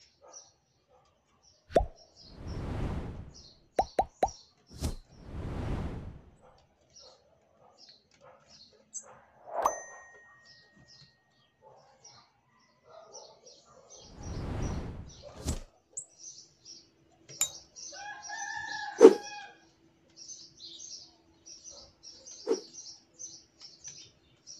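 Bananaquits giving rapid, short, high chirps throughout, among scattered sharp clicks and knocks and three bursts of rushing noise, each one to two seconds long. Near the end comes a louder sound with a clear held pitch, with a sharp knock at its peak.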